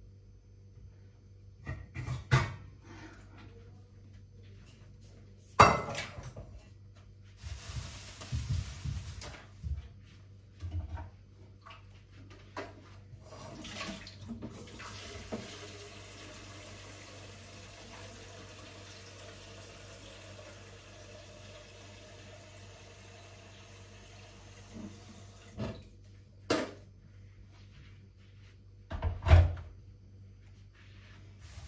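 A kitchen tap running into a sink, first briefly, then steadily for about twelve seconds in the middle. Knocks and clatter of kitchenware come before and after, the loudest a sharp knock about six seconds in.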